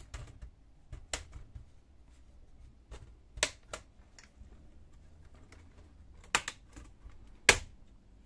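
Plastic retaining clips of an ASUS X401U laptop's top case snapping loose as the case is pried off the bottom case. A scatter of sharp, irregular clicks, the loudest near the end.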